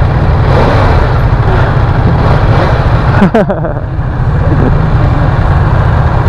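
Inline-four sport bike engine being revved at a standstill, the throttle twisted so the exhaust runs loud for several seconds. There is a short dip about three seconds in before it picks up again.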